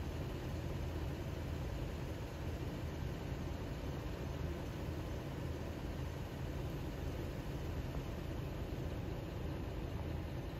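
A vehicle engine idling steadily, a low even hum with no change in speed.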